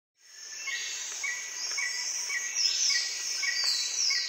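Birds and insects calling: a short chirp repeats about twice a second over a high, steady hiss of calls, with a few higher whistles sliding downward.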